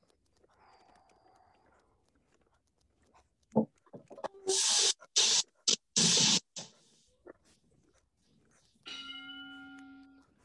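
A single bell ding near the end that rings on and slowly fades, the kind of boxing-round bell effect played as a joke. Before it, in the middle, comes a sharp knock and then four loud bursts of hiss.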